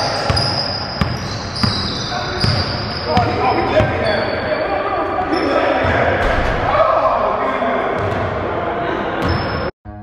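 Basketballs bouncing on a hardwood gym floor, with sneaker squeaks and players' voices echoing in a large hall. The sound cuts off abruptly just before the end.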